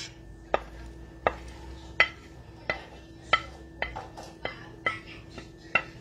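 Wooden spoon tapping and scraping against a plate, about ten sharp taps at roughly one and a half a second, as diced butternut squash is knocked off into a skillet of penne.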